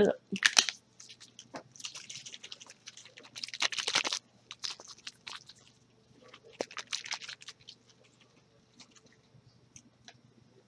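A small bottle of watery blue color mist paint shaken by hand in several short bursts over the first seven seconds, rattling and sloshing, to mix the paint.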